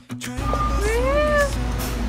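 A person's drawn-out vocal cry, rising and then falling in pitch, over a steady low rumble.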